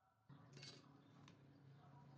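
Near silence, broken by one faint metallic clink a little over half a second in and a fainter tick later, as the steel battery-cable clamps are handled.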